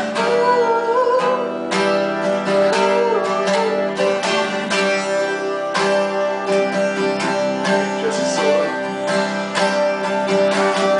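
Acoustic guitars strummed in a steady rhythm, with a man's voice singing a wavering melody over them.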